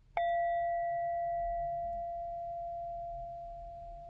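A single bell-like chime struck once just after the start, a clear ringing tone with a couple of higher overtones, sustaining and slowly fading.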